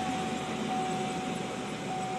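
Steady hum and hiss of a parked car running, heard from inside the cabin, with a thin steady tone over it.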